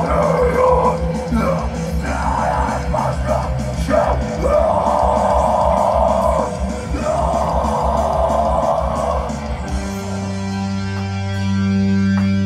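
Live post-hardcore/metalcore band playing loud guitars and drums under screamed vocals, with two long held screams in the middle. About ten seconds in the drumming drops out and a low chord is left ringing.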